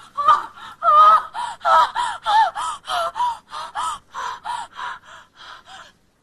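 A woman gasping in distress: a rapid run of short, voiced gasping breaths, about three a second, growing fainter toward the end.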